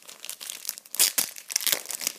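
Green plastic trading-card sleeves crinkling and crackling as they are handled, in irregular bursts, loudest about a second in.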